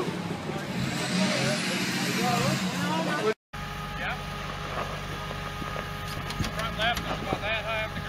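Short calls from onlookers over a noisy background, then, after a sudden cut, an off-road buggy's engine running steadily at idle with a few more brief voices.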